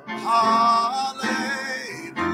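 A man singing a worship song over instrumental accompaniment: two sung phrases with held, wavering notes, the second starting just over a second in.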